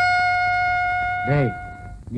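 A trumpet holding one long, steady note, the last note of a short fanfare, weakening slightly and stopping just before the end. A man's brief exclamation overlaps it about 1.3 seconds in.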